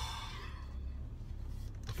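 A man's short sigh at the start, over the steady low rumble of a car cabin while driving.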